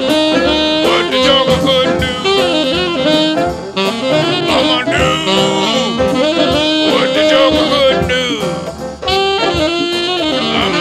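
Jazz recording with a saxophone playing a bending, gliding lead line over drums and brass, with no singing.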